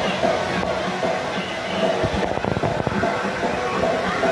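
Water-park background noise: distant voices and music over a steady wash of sound, with a low rumble about two to three seconds in.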